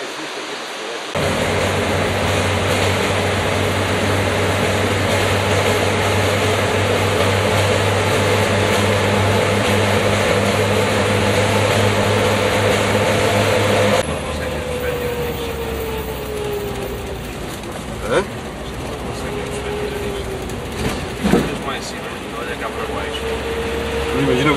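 A car driving through a rock-cut tunnel, heard from inside the car: a loud, steady engine and road drone with a low hum that starts abruptly about a second in. Near the middle it drops quieter, and the engine note slides down and back up, with a few sharp clicks.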